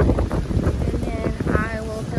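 Wind buffeting the microphone with a low rumble, joined in the second half by high, wavering pitched sounds.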